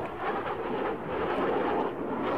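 Steady rumble of jet aircraft engines, with no sharp events.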